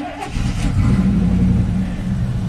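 1987 GMC 1500 pickup's engine just started and running steadily, heard from inside the cab.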